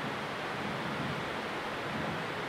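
Steady, even hiss of room noise with no distinct events.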